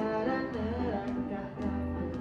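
Live band music: electric keyboard chords over a low bass line, with a melody that wavers in pitch in the first half and faint, regular percussive clicks.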